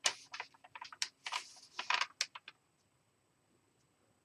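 A quick, irregular run of sharp clicks and short scratchy rustles for about two and a half seconds, then it stops.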